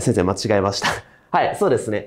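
Speech only: a man talking in short phrases, with a brief pause a little past the middle.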